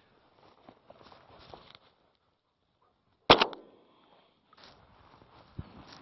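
A single shotgun shot about three seconds in: one sharp, loud crack with a short tail. Faint footsteps are heard before and after it.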